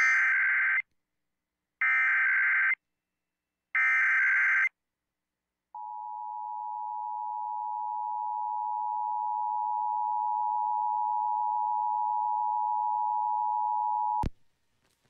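Emergency Alert System header over broadcast radio: three short bursts of buzzing digital data tones (the SAME header), each just under a second and about two seconds apart, then, after a brief gap, the steady two-tone attention signal held for about eight seconds before it cuts off. Together they open a Required Monthly Test alert.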